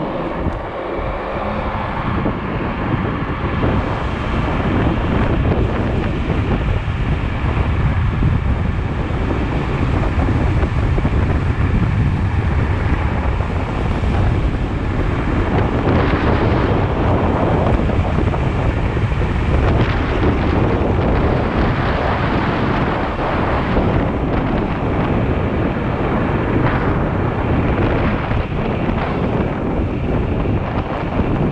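Wind rushing over the microphone as a Teverun Fighter Supreme 7260R electric scooter rides at speed in its third speed mode. It is a loud, low rumble that builds over the first few seconds as the scooter gathers speed, then holds steady with small gusts.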